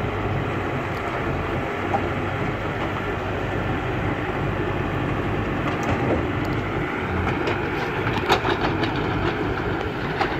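Diesel engines of a crawler excavator and a tracked carrier running steadily. In the second half comes a run of sharp knocks and clatters.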